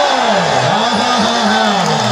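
A man's voice holding one long, drawn-out call on a single vowel, its pitch wavering up and down.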